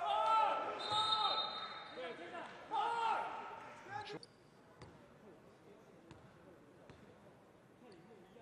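Basketball arena sound: voices calling out in a large hall for the first half, then it drops to a low hum with a few faint knocks of a bouncing basketball.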